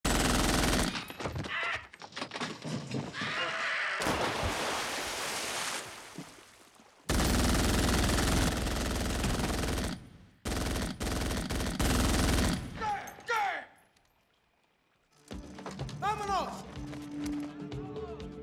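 Automatic gunfire in long, dense bursts, four of them with short breaks between, stopping about two-thirds of the way through.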